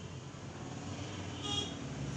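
Faint background noise, with a brief faint high-pitched toot about one and a half seconds in.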